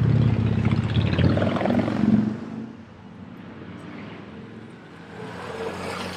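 A motorbike passes close by, its engine loud and rising in pitch, then falling away about two seconds in. Steady city traffic noise follows.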